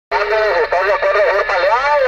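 A voice coming in over a DX 33HML CB radio and heard through its speaker. The sound is thin and cut off at the low end, with a steady hiss underneath.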